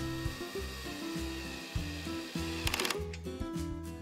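Background music with a cordless power drill driving a quarter-inch hex-head wood screw through a steel hairpin leg's mounting plate into a wooden tabletop. The drill whines in stretches, and a short sharper burst comes just before the three-second mark.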